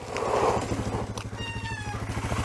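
Dual-sport motorcycle engine running slowly as it approaches, a steady low pulsing. A brief high-pitched squeal comes about a second and a half in.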